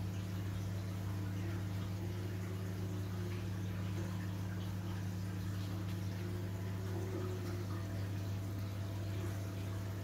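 Reef aquarium running: a steady low hum from its pump with water trickling and circulating through the tank and sump.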